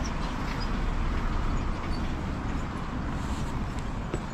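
Steady city traffic and street noise with a heavy low rumble, heard while cycling along a sidewalk beside the road.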